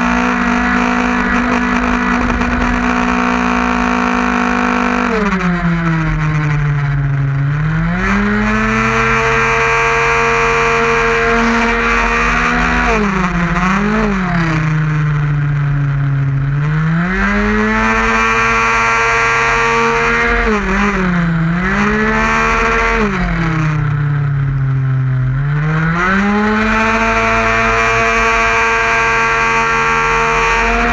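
A 50cc two-stroke racing scooter engine at full throttle. It holds a steady high pitch at first, then about five seconds in begins dropping and climbing back several times as the rider rolls off for corners and gets back on the throttle.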